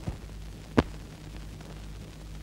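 Steady low hum on an old film soundtrack, with one sharp click a little under a second in and a fainter one at the start.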